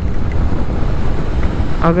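Raindrops striking a motorcycle helmet visor while riding in heavy rain, under a loud, steady rush of wind noise on the microphone.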